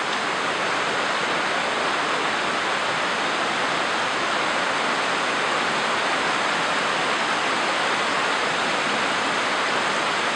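Shallow, rocky river rushing over stones and small cascades: a steady, even rush of water.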